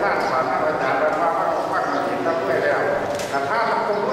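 A monk's voice speaking into a microphone, delivering a sermon in a steady unbroken flow.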